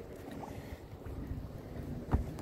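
Steady low wind and water noise around a bass boat sitting on choppy water, with no distinct events.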